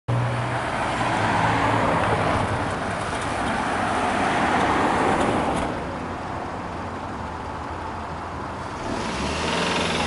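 Road traffic noise of motor vehicles, louder for the first half, dropping for about three seconds and rising again near the end.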